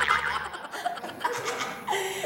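Laughter into a handheld microphone, loudest at the start and trailing off.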